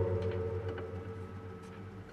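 A strummed guitar chord ringing out and slowly fading away, in a pause before the next strum.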